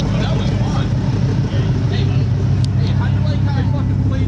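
A sports car engine idling steadily close by, with no revving.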